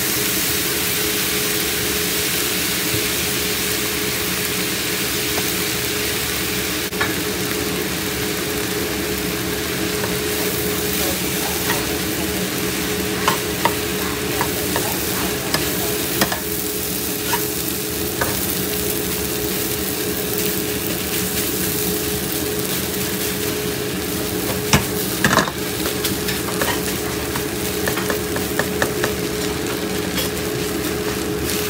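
Fried rice sizzling in a cast iron wok while a metal spoon stirs it, with scattered clicks and knocks of the spoon against the pan that come more often in the second half. A steady hum runs underneath.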